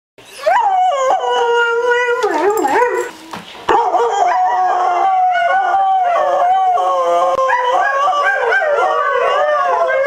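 Greyhound howling in long, wavering cries that glide up and down in pitch, with a short break about three seconds in before the howling picks up again and carries on.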